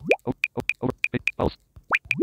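Smartphone interface sound effects as a ringtone list is scrolled: a run of short, high ticks, about three or four a second, with quick rising plops at the start and again just before the end.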